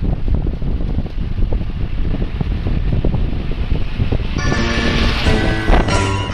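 Wind buffeting the microphone in low, rumbling gusts. About four and a half seconds in, several steady pitched tones come in over it.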